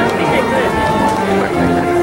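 People talking near the microphone over music made of long held notes, in an outdoor crowd.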